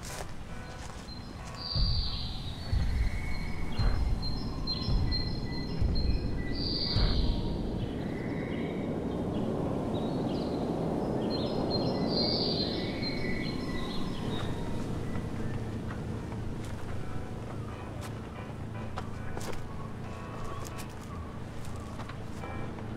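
A jogger's running footsteps thud past on the road for a few seconds, over birds chirping and soft background music.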